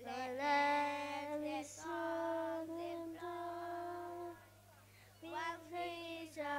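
A child singing unaccompanied into a microphone, long held notes in phrases with a short break about four and a half seconds in, over a steady low electrical hum from the sound system.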